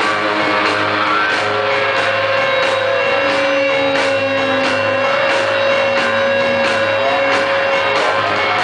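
Live rock and roll band playing loud: electric guitar, piano and drums over a steady, driving beat. A long note is held from about a second and a half in until the end.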